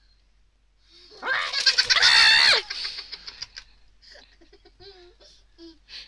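A toddler squeals with laughter, loud and high, for about a second and a half starting about a second in, then giggles in short breathy bursts.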